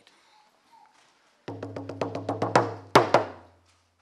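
Hand-held hide frame drum struck with a beater in a fast, even roll of about six beats a second. It starts about one and a half seconds in, grows louder, then stops just before the end, opening a Native American purification song.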